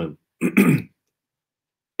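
A man briefly clears his throat once, about half a second in, just after the last syllable of a spoken phrase.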